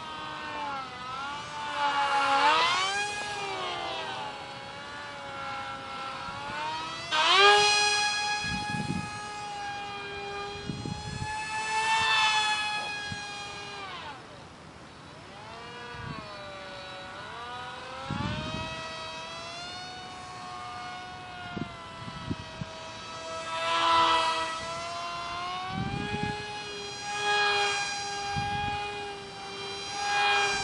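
Micro foam delta wing's 8 mm motor with a direct-drive propeller, a high-pitched whine in flight whose pitch keeps gliding up and down and which swells loud about six times as the plane comes near. A few short low thumps in between.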